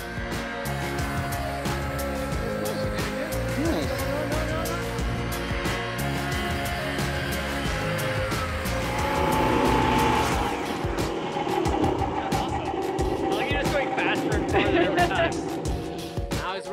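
Background music mixed with a snowmobile engine running and revving as the machine is ridden through snow.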